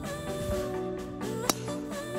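Background music with a sliding melody, and a single sharp crack about one and a half seconds in, the loudest moment: a golf club striking the ball off the tee.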